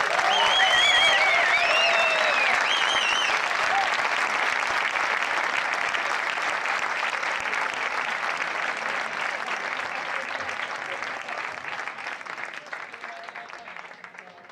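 Small audience applauding, with a few cheers in the first few seconds; the clapping slowly dies away near the end.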